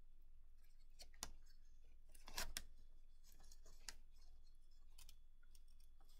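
Faint rustles and crinkles of a brown paper lunch bag being handled while yarn is threaded and tied through a hole in it: a few short, soft scrapes, the loudest about two and a half seconds in, over a low steady hum.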